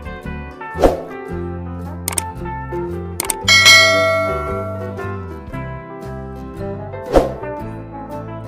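Instrumental background music with a subscribe-button animation's sound effects over it: a sharp thump about a second in, two quick clicks, then a loud bell ding ringing out for about a second, and another thump near the end.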